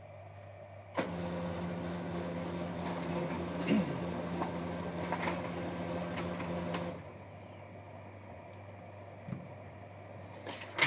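Desktop printer printing a page: a click about a second in, then a steady motor run with a low hum and a few ticks, stopping abruptly about six seconds later.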